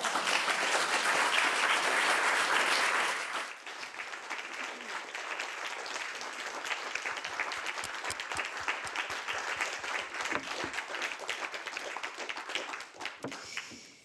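Audience applauding at the end of a reading: a dense, full applause for the first three or four seconds, then thinning into scattered separate claps that die away near the end.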